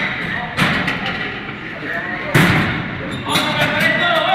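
Indistinct voices in an echoing space, with two sharp knocks, one about half a second in and a louder one a little after two seconds.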